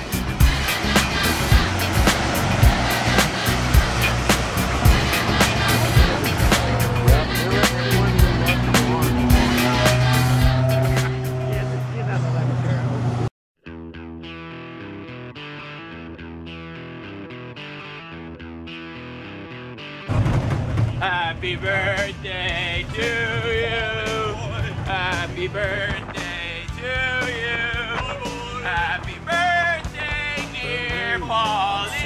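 Background music: a loud track with a dense beat that cuts off about 13 seconds in, a quieter passage, then a country song with singing starting about 20 seconds in.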